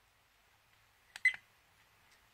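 A XuanPad dash cam's menu button pressed by thumb: a quick cluster of small plastic clicks with a short, high electronic beep from the camera's button sound, just past a second in.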